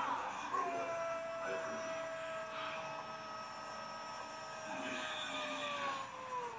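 A TV football commentator's long, drawn-out goal cry ("gooool"), one held note that sinks slowly in pitch over about five seconds, celebrating a goal just scored, with stadium crowd noise faintly beneath.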